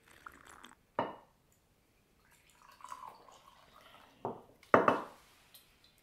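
Red wine poured from a glass bottle into a small drinking glass, with a few short, sharp sounds of drinking and glassware; the loudest comes just before five seconds in.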